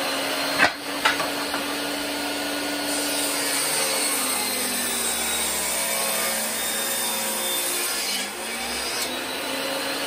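Table saw running steadily while cutting three-quarter-inch mahogany boards, with two sharp knocks about a second in.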